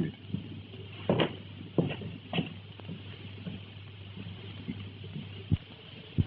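Footsteps on a floor, three steps about half a second apart, then a single sharp low knock near the end, over the steady hum and hiss of an old film soundtrack.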